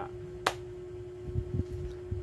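A pause in speech: a steady low electrical hum, with one sharp click about half a second in and a few soft low thumps near the end.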